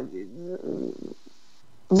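A woman's voice trailing off mid-sentence into a short, low hesitation sound. About a second of quiet room tone follows, and her speech starts again near the end.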